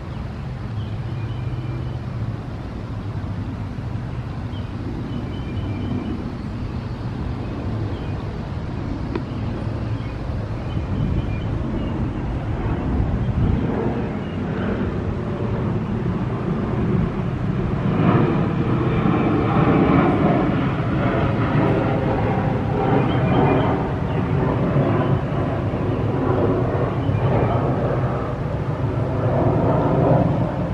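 Outdoor ambience of steady, distant engine rumble from traffic, swelling louder from about halfway through as a vehicle passes, with a few short high chirps over it.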